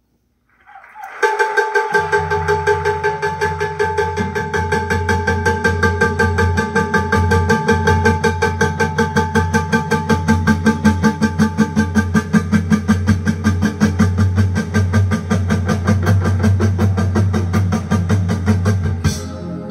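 Recorded music played loud through a three-way Altec horn loudspeaker system driven by valve amplifiers. It opens from silence about a second in with a held chord, and bass comes in a second later. Under it runs a fast, even, train-like rhythmic pulse.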